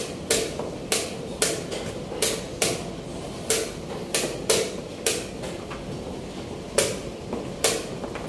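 Plastic chess pieces being set down hard and a chess clock being pressed in quick succession: a run of sharp clacks about two a second, with a pause of about a second just past the middle.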